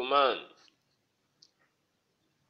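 A man's voice giving one short, drawn-out syllable right at the start, followed by a single faint click about a second and a half in.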